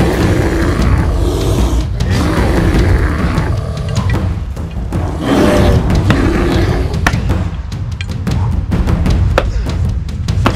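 Music with bear roaring and growling sound effects laid over it. The roars come in rough stretches near the start and again about five seconds in. Later there are a few sharp knocks.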